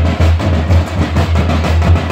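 Loud drum-led folk music with quick, dense beats and a heavy low end.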